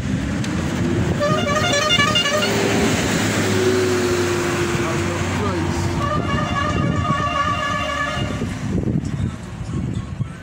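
A motor vehicle passing close by, its engine and road noise swelling and then fading, with its horn sounding in short repeated toots about a second in and again about six seconds in.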